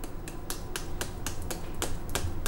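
Hand-twisted spice grinder clicking as it grinds seasoning over a meal, a steady run of sharp clicks about four a second.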